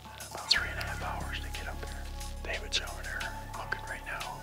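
A man whispering, over soft background music with steady held notes.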